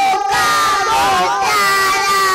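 Two young girls singing a devotional song together into microphones, their amplified voices overlapping in long held, gliding notes.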